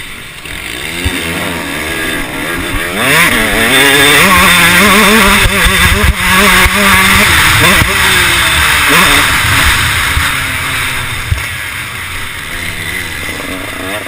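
KTM 150 SX two-stroke single-cylinder motocross engine, heard up close from an onboard camera, revving up and down again and again as the bike is ridden through the gears. It is loudest and highest a few seconds in, eases off near the end, then climbs again.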